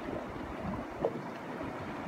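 Steady outdoor wind and sea noise, with wind on the microphone.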